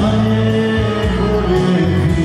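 Live folk-pop band music: a man singing over an electronic keyboard and a button accordion, with a bass line that changes every second or so.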